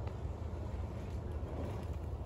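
Faint rolling of a mountain bike's knobby tyres on a dirt track as it approaches and takes off from a jump, over a low steady rumble.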